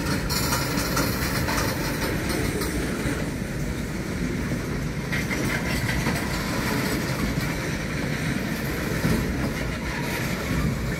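Tank cars of a freight train rolling past: a steady rumble of steel wheels running on the rails.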